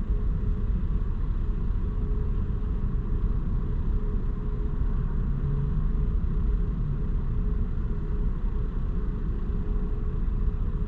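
A car idling, heard from inside the cabin: a steady low rumble with a faint, even hum above it.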